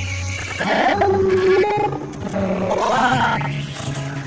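Heavily processed, garbled cartoon soundtrack: several overlapping pitched voice-like and musical sounds, warped by audio effects, sliding up and down in pitch.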